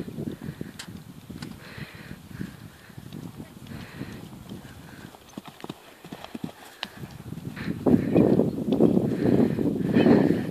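Skewbald pony's hooves beating on grass at a canter, with a jump over a log partway through. The hoofbeats grow louder near the end.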